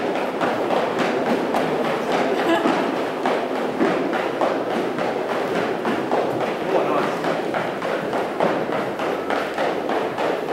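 Gym-floor ambience during a group circuit workout: indistinct voices in a large echoing room, with frequent thuds and taps from feet and exercise gear.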